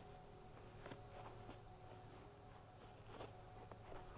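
Near silence: faint outdoor quiet with a few soft footsteps on grass.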